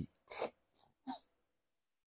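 Faint breathing of a man pausing in his speech: two short breaths, the second just after a second in.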